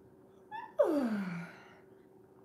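A woman yawning behind her hand: a brief breath about half a second in, then a long voiced yawn sliding down in pitch and fading. It is the yawn of someone falling asleep.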